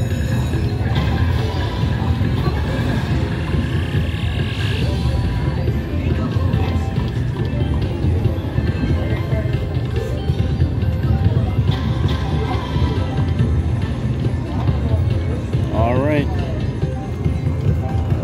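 Video slot machine playing its music and jingles as a $212 win is counted up into the credit meter. Casino-floor din of other machines and voices runs underneath.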